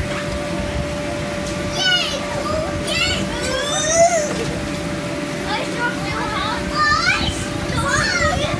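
Young children playing, with high-pitched squeals and shouts about two seconds in and again near the end, over a steady low hum.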